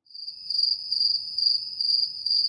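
Crickets chirping in a steady high trill that starts suddenly, a cricket sound effect laid into a pause in the talk.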